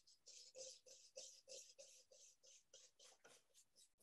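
Faint scraping of a spatula stirring thick soap batter in a ceramic bowl, in quick repeated strokes that fade out partway through. The batter is being mixed back up to thickness after essential oils were added.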